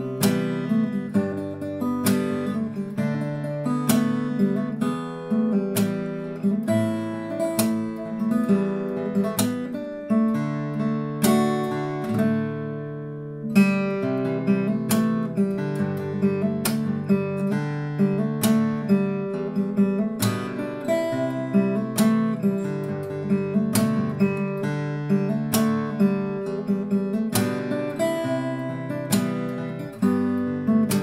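Blueridge BR-371 parlor acoustic guitar played fingerstyle: a continuous picked pattern of bass notes under a melody. About eleven seconds in, a chord is left ringing and fading for a couple of seconds before the picking resumes with a sharp attack.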